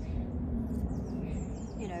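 Small birds chirping in the background over a steady low rumble of wind on the microphone; a woman's voice starts near the end.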